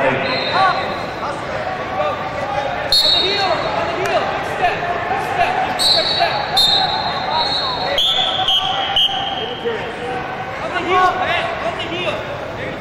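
Several short, high referee-style whistle blasts at two different pitches, sounding over a constant hubbub of voices and shouting in a large echoing hall.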